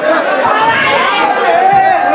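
Several people talking and calling out over one another: loud, overlapping chatter.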